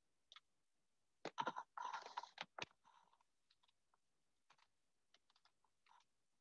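Faint clicks and a brief rustle picked up over a video-call microphone. There is a quick cluster of sharp clicks with rustling a little over a second in, then scattered small clicks, like typing or handling noise.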